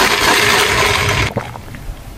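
Iced coffee sucked up through a plastic straw: a loud, noisy slurp that cuts off just over a second in.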